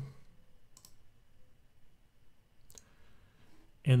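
Two short computer mouse clicks about two seconds apart, over faint room hiss.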